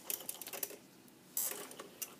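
A few light clicks and taps from hands handling welded steel brackets and a wiring harness, then a short scuffing rustle a little past halfway.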